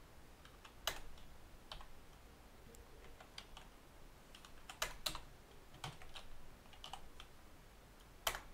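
Computer keyboard being typed on: faint, irregular keystrokes in short runs, with a few louder key presses about a second in and around five seconds in.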